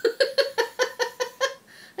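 A woman laughing in a quick run of about eight short ha-ha pulses, about five a second, which die away about a second and a half in.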